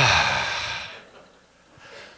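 A man's long sigh into a handheld microphone: a short falling voiced start that trails off into breath over about a second.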